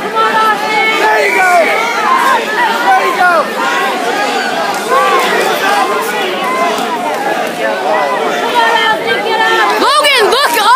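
Spectators' voices shouting and talking over one another, a loud, steady mix of many voices.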